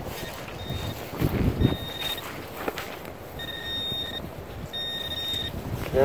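Metal-detecting pinpointer probing a dug hole, sounding four short steady beeps, the later ones longer, as it homes in on a buried coin. Soft scraping and rustling of soil and hands between the beeps.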